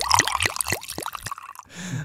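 Liquid glugging and plopping from a freshly cracked drink can, a quick irregular run of drops over the first second and a half.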